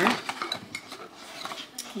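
Cardboard perfume box being handled and opened: a sharper knock at the start, then a scatter of light clicks and scrapes.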